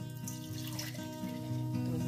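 Lightly carbonated homemade water kefir being poured from a glass bottle into a glass mug, a steady pouring splash of liquid. Background music plays over it.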